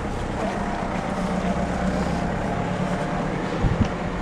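A vehicle engine running steadily in street traffic, with a faint steady whine above the low drone. A few low thumps near the end.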